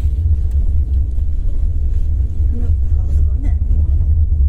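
Steady low rumble of a car in motion, heard from inside the cabin, with faint voices in the background.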